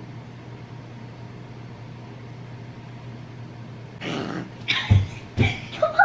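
A steady low hum. About four seconds in, a girl laughs in short, breathy, forceful bursts, with three heavy puffs about half a second apart near the end.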